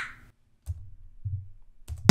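A sharp click right at the start, then a quiet gap with two brief faint low hums and a soft click near the end.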